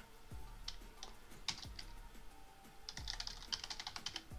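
Typing on a computer keyboard: scattered keystrokes, then a quick run of keys about three seconds in.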